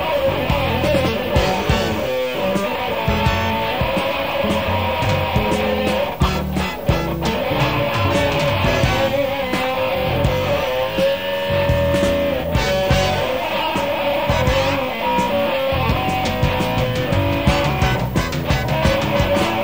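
Live rock band playing an instrumental passage, heard from the soundboard: an electric guitar lead holds long, bending sustained notes over bass guitar and drums.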